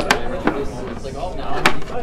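Wooden chess pieces being set down onto a wooden board while the pieces are reset: three sharp clacks, the loudest about a second and a half in.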